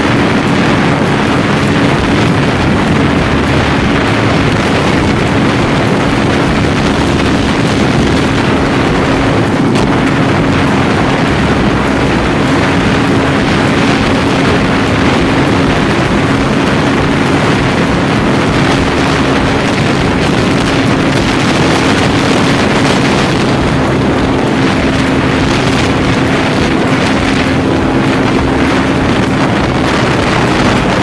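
Bajaj Pulsar 220 motorcycle's single-cylinder engine holding a steady cruising speed, with a steady hum, under heavy wind noise on the handlebar-mounted phone's microphone.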